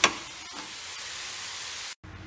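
Grated coconut and melted jaggery filling sizzling steadily in a pan over a gas flame, with a spatula knocking and scraping against the pan at the start and once more about half a second in. The sizzle cuts off suddenly near the end.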